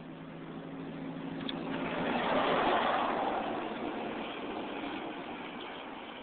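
A road vehicle passing by: its tyre and engine noise swells, is loudest a little under halfway through, then fades away slowly.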